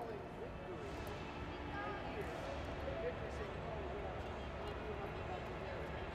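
Indistinct chatter of several people talking in a large indoor hall, over a steady low hum of the room.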